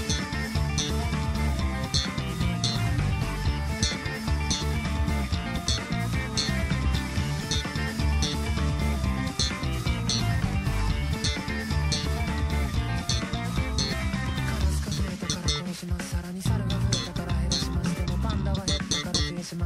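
Electric bass guitar, a four-string Fender-style bass, played in time with a full-band rock backing track of drums and guitars. The bass line sits low and busy under a regular drum beat, and the music thins out briefly about fifteen seconds in.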